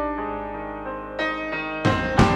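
Electric piano chords held on a Yamaha stage keyboard, changing to a new chord just over a second in, with a sharp hit near the end.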